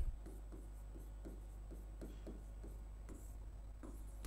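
Faint pen strokes and light taps on an interactive whiteboard screen as a word is handwritten, coming as short irregular scratches several times a second.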